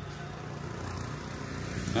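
An engine running steadily in the background, slowly growing louder.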